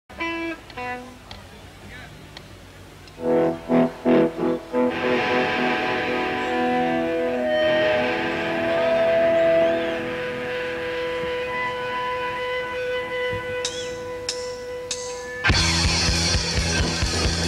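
Live rock band starting a song. First come a few guitar notes and several loud chord hits, then sustained ringing tones with a sliding pitch. A few sharp clicks follow, and the full band comes in loud about fifteen and a half seconds in.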